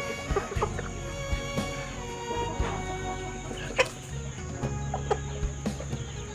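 Chickens clucking in short, scattered calls over steady background music.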